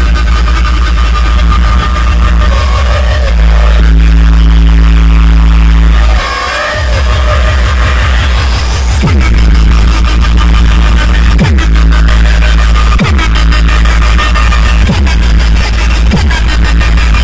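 Loud electronic DJ dance music with heavy bass. About six seconds in the bass briefly drops away, then comes back with repeated falling bass sweeps.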